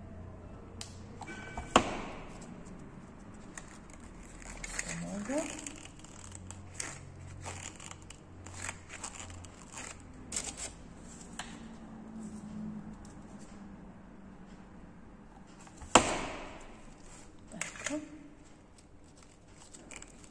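Hands handling small decorative roses and a polystyrene ball: light rustling and crinkling with scattered small clicks, and two sharp taps, one about two seconds in and one about four seconds before the end.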